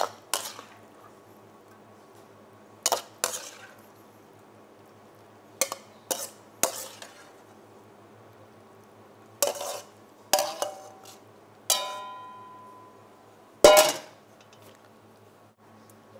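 Metal ladle clanking and scraping against a wok in about a dozen irregular strikes as a stir-fry is scooped out for serving, one strike about twelve seconds in ringing on metallically and the loudest coming near the end. A faint low steady hum runs underneath.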